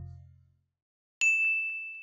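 The last of an intro jingle fades out. A little over a second in, a single high ding chime (a logo sting sound effect) strikes and rings, slowly fading.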